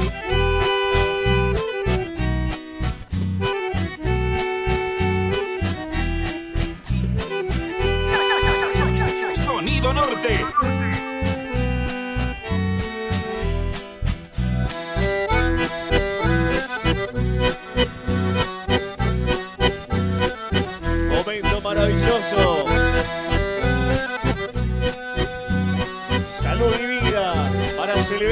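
Live dance band playing a waltz, with accordion carrying the melody over a steady, regular bass beat.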